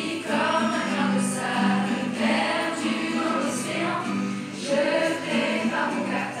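A group of school students and staff singing a song together as a choir, over a steady low accompaniment.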